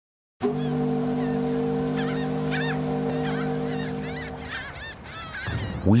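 A ship's horn sounds one long steady blast that starts suddenly and fades out after about four seconds, with gulls calling over it.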